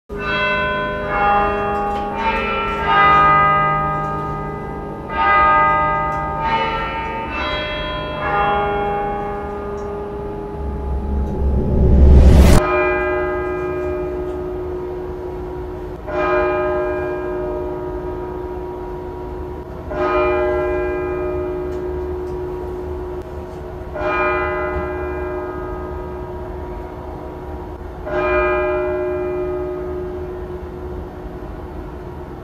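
Clock-tower bells chiming a tune of several notes, then a rising whoosh that builds to a loud peak about twelve seconds in and cuts off. After it a single bell tolls with a long ringing decay, one stroke about every four seconds, five strokes in all.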